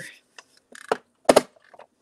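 A few short clicks and knocks of a desk lamp being repositioned by hand. The loudest comes a little past the middle, with faint ticks after it.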